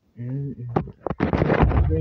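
A short hummed note, then a few sharp clicks and a loud burst of rustling handling noise as the phone is moved and its microphone is rubbed and covered.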